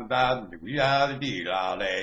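A man chanting in a low voice, holding drawn-out syllables on a near-steady pitch with short breaks between them.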